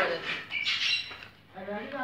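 High-pitched children's voices calling out in short, squealing bursts.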